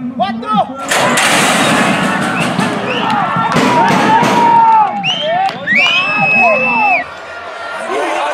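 A metal horse-racing starting gate bangs open about a second in. A crowd then shouts and cheers with long, high yells as the horses break and run. The cheering stops abruptly about seven seconds in.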